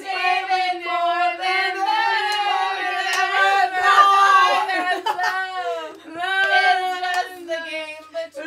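Several young women singing together unaccompanied, loudly, holding long notes.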